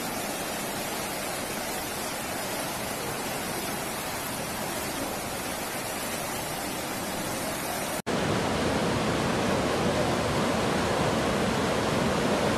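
Floodwater rushing down a flooded street, a steady dense rush of water. About eight seconds in it drops out for an instant and comes back louder and deeper as a second, muddier torrent is heard.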